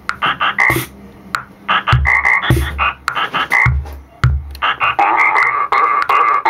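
Circuit-bent Lego sound toy playing its stored sounds as a chopped, stuttering loop of short pitched blips, run in sync with a Roland DR-55 drum machine whose low kick-drum thumps and occasional hiss-like hits fall between them, making a crude techno rhythm.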